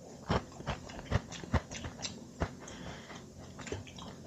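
Biting and chewing a dense, compressed emergency ration bar: a string of short, quiet crunches about two a second, fainter after the first couple of seconds.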